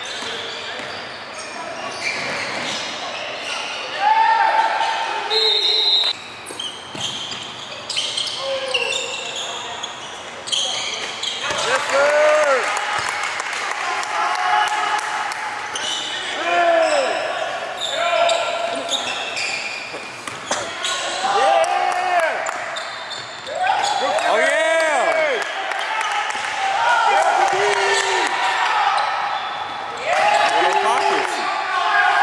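Basketball game sounds in an echoing gym: a ball bouncing on a hardwood court, repeated short squeaks that rise and fall every few seconds, and background voices of players and spectators.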